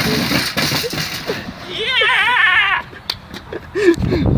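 A shopping cart rattling as it is rolled over wooden boardwalk planks, fading out after about a second and a half. About two seconds in, a person gives a high, wavering cry lasting roughly a second.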